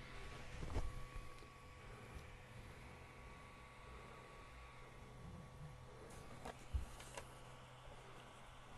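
Faint handling sounds as an Ender 3 V2 3D printer's print head and bed are pushed by hand with the steppers disabled: a little rustle at first, then a few light knocks, mostly near the end, over a faint steady hum.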